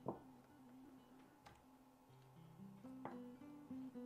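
Faint background acoustic guitar music, with a few soft knocks as pieces of pork are put into a pot, the first just after the start being the loudest.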